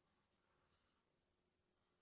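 Near silence, with faint scratching of a pen drawing on paper.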